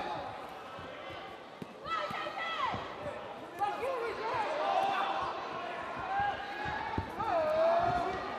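Dull thuds of punches and kicks landing in a kickboxing exchange, a few sharper hits near the end, under shouted voices.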